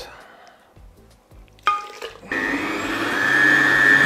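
Countertop blender puréeing cauliflower soup: the motor starts with a whine about a second and a half in, then runs loud and steady at full speed, its pitch rising slightly, until it cuts off at the end.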